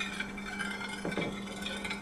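A metal spoon quietly stirring dissolved cherry gelatin in a dish, a soft liquid swishing with a steady low hum underneath.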